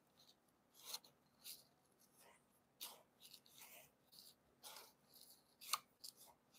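Faint, short scrapes and crunches, about a dozen, of a plastic stir stick scooping a thick, granular Epsom-salt slurry from a plastic cup and stabbing it down into a geode board.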